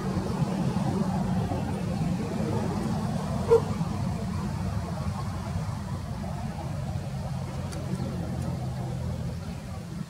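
A steady low engine rumble, with a single short dog bark about three and a half seconds in.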